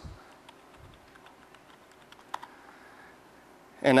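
Typing on a computer keyboard: faint, uneven keystrokes, with a sharper pair of key clicks a little past halfway.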